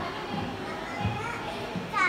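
Indistinct chatter of a crowd of visitors, with children's high voices standing out.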